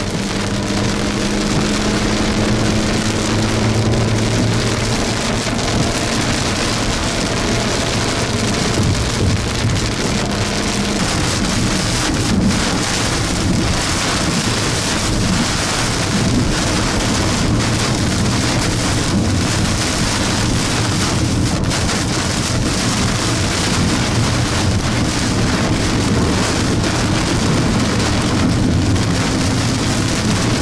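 Heavy wind-driven rain pelting the windshield and body of a moving car, heard from inside the cabin as a loud, steady rush over the low drone of the car on the wet road.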